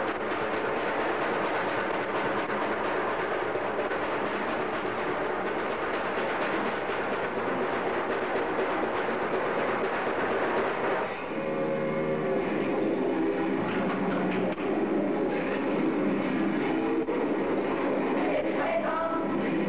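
Raw black metal from a lo-fi cassette demo: distorted guitar and drums blur into a dense, hissy wash. About eleven seconds in it changes to held chords with a clearer pitch.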